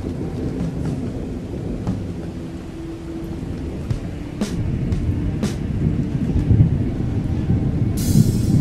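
Thunderstorm effect in a song's backing track: a low rumble that builds about halfway through, with two sharp cracks about a second apart, over held low musical notes.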